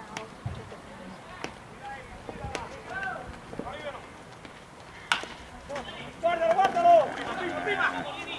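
Baseball bat striking a pitched ball with a single sharp crack about five seconds in, followed by people shouting and calling out loudly as the ball is put in play.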